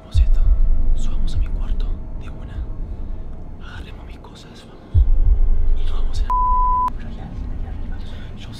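Two sudden deep booms, one just after the start and one about five seconds in, each dying away over a second or two, under faint whispering. A short steady beep sounds a little after six seconds.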